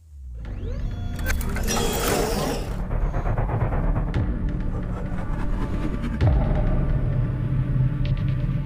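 Channel intro music built on a deep, steady bass rumble, with a hissing swell about two seconds in and a heavy low hit a little after six seconds.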